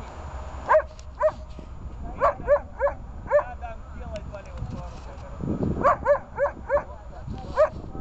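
A dog barking: a series of short, sharp barks, about six in the first three and a half seconds, then a second run of about five near the end.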